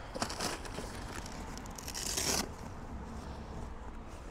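Nylon straps and fabric of a motorcycle tank bag being pulled and worked by hand while trying to release the locked-on bag, with rustling near the start and a louder rasp about two seconds in.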